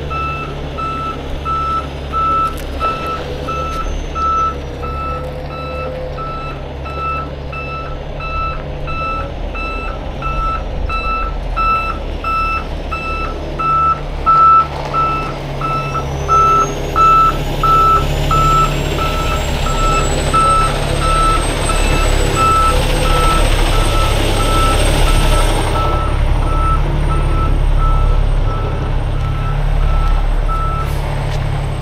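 A heavy truck's reversing alarm beeping steadily, about two beeps a second, over its diesel engine running as the truck backs up. The beeping stops just before the end.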